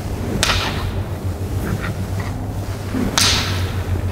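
Two golf clubs held together and swung back and forth in continuous practice swings, swishing through the air: two loud swishes about three seconds apart, with fainter ones on the swings between.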